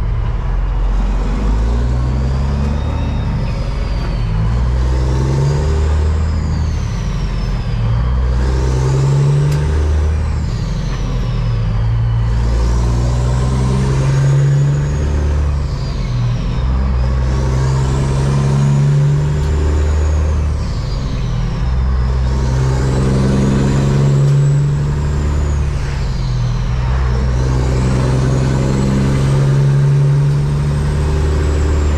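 Caterpillar diesel in a semi truck pulling away through the gears, heard from inside the cab. The engine note climbs in each gear and drops at each upshift, every few seconds, with a turbo whistle rising and falling along with it.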